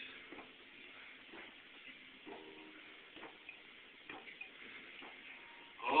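Faint gulping of a person chugging egg nog from a glass boot, the swallows coming as soft clicks about once a second.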